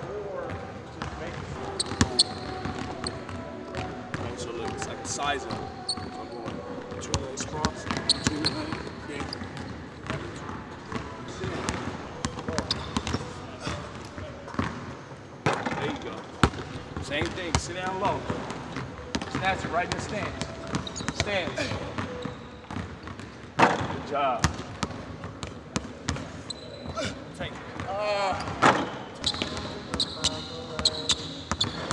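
A basketball dribbled and bouncing on a hardwood gym floor in an empty arena, with many sharp, irregular bounces.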